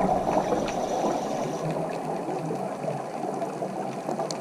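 Bubbling water noise recorded underwater, from scuba divers' exhaled air. It is loudest at the start and eases off after about a second, with a few faint clicks.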